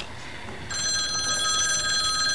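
Rotary desk telephone's bell ringing with a fast trembling rattle, starting a little under a second in.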